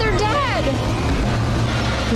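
Movie soundtrack of a chaotic fight scene: voices crying out, their pitch falling, over a loud, continuous rumbling din.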